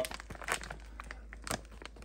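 Clear plastic zip-lock bags crinkling as they are handled, a run of faint irregular crackles with one sharper click about one and a half seconds in.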